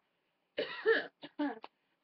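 A woman coughing: one strong cough about half a second in, then a few shorter ones.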